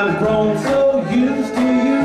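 Western swing band playing live: a held, bending lead melody over upright bass, guitar and drums.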